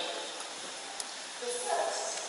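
A voice speaking in a large hall over a steady hiss, with a short phrase near the end and a single click about a second in.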